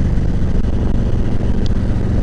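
2018 Harley-Davidson Ultra Classic's V-twin engine running steadily at cruising speed, heard from the rider's seat.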